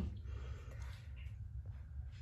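Quiet room with a low, steady hum and a few faint soft clicks.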